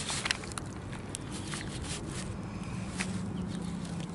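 Quiet handling noises from cleaning a gutted chinook salmon on newspaper: a few soft clicks and rustles as hands work at the gills, over a faint low steady hum.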